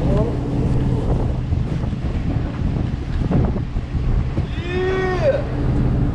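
A commercial fishing boat's engine running with a steady low hum, with wind rushing on the microphone.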